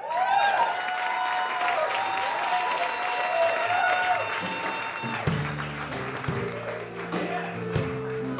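Audience applause and cheering start suddenly. About five seconds in, music with plucked guitar notes begins under it.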